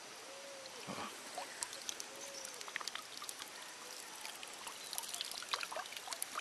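Water dripping and trickling from wet cupped hands holding tadpoles, many small drips that grow busier toward the end, over the faint flow of a river.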